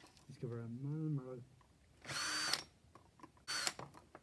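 Cordless drill run in two short bursts, each with a high motor whine, as it bores into a small wooden disc.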